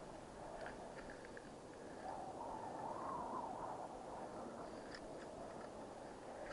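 A climber's boots crunching into soft, trodden snow on a steep slope, faint, with a louder stretch of crunching in the middle and a few light clicks.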